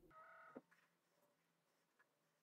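Near silence, apart from a faint steady electronic tone lasting about half a second at the start, cut off by a single click.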